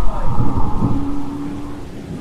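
Thunder rumbling over rain, with a steady droning tone held underneath; the rumble dies down toward the end.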